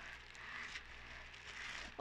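Faint rustling and crinkling of a plastic bubble-wrap bag being handled, with a few soft clicks, over a low steady hum.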